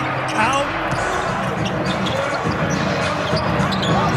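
On-court sounds of a televised NBA basketball game: the ball bouncing on the hardwood floor and short squeaks, over steady arena background noise.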